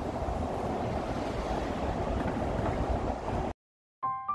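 Steady outdoor ambience with wind buffeting the microphone, cutting off abruptly about three and a half seconds in.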